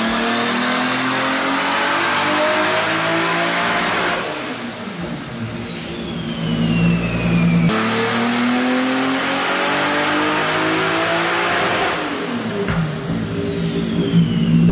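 Turbocharged Toyota 2JZ inline-six in a 350Z making wide-open-throttle pulls on a hub dyno: the revs climb steadily for about four seconds, then fall away as the throttle is lifted. A second pull, cut in about halfway, climbs again and drops off near the end.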